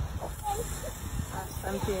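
Brief talking over a steady low outdoor rumble, with a voice saying "yeah" near the end.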